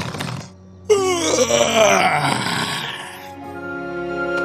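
A cartoon bear's loud vocal snore. It starts suddenly about a second in, slides down in pitch and fades out over a couple of seconds, with background music underneath.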